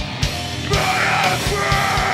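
Hardcore punk band playing live: distorted electric guitars, bass and drum kit pounding, with shouted vocals coming in under a second in.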